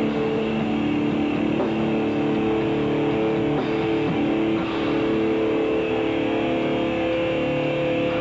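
Noise-rock band playing live and loud: a distorted electric guitar holds a steady, sustained chord over the drums.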